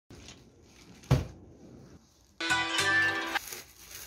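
A single sharp thump about a second in, then a short musical sting of several steady tones held together for about a second.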